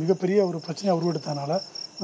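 A man's voice talking, with a thin high-pitched pulsing trill running steadily in the background.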